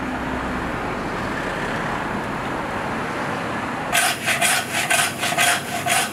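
Steady street background noise, then about four seconds in a butcher's hand bone saw starts cutting through the bone of a beef short loin in quick back-and-forth strokes, about three a second, as T-bone steaks are cut.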